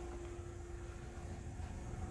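Faint steady low rumble with a thin, steady hum tone running over it: background machine or room hum.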